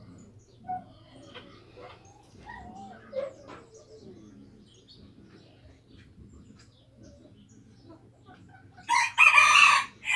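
Rooster crowing once, loud and about a second long, near the end, after several seconds of only faint soft sounds.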